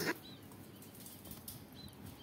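Sialkoti pigeon flapping its wings in a wire cage: a short, loud burst of wingbeats right at the start, then much quieter.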